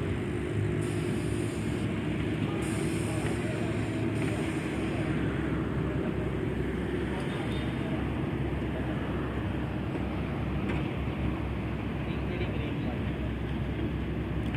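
An engine running steadily with an even low hum.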